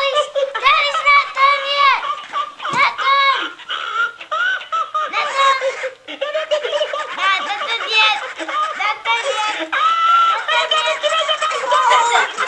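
Tickle Me Elmo plush toy's recorded laughter, high-pitched and almost unbroken, set off by pressing the button on its foot, with young children giggling along. The laughter drops out briefly about halfway through.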